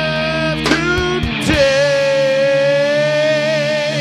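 Live rock band playing the close of a song: a long held note with guitar and singing over it, from about a second and a half in.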